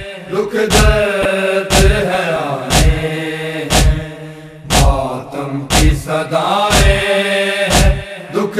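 Mourners beating their chests (matam) in unison, one heavy thump about every second, under a group of voices chanting a nauha. The chanting drops away briefly about halfway through while the beats keep time.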